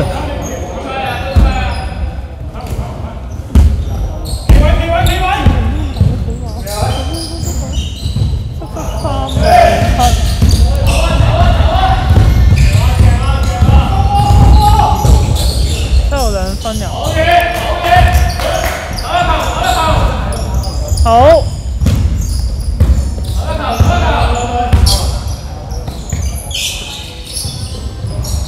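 A basketball bouncing on the hardwood court of a large, echoing indoor sports hall during live play, with players calling out to each other over it.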